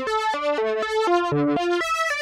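Synthesizer playing a quick line of single notes, about five a second, stepping up and down in pitch.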